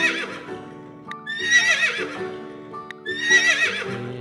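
Horse whinnying over background music: high, quavering neighs, one trailing off at the start and two more about every second and a half.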